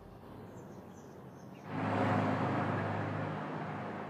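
A car driving past close by: engine hum and tyre noise come up suddenly a little under two seconds in, then slowly ease off. Before it, only the faint tail of soft background music.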